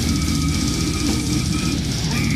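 Slamming brutal death metal: heavily distorted, low-tuned guitars and drums playing at full volume, with a steady high tone held above them.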